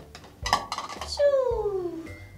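A plastic toy spatula knocks and scrapes against the inside of a toy rice cooker's pot. A long falling tone follows about a second in.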